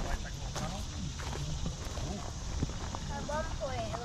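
Footsteps crunching on a wood-chip mulch path, a steady run of short steps, with people's voices talking indistinctly nearby, clearest near the end.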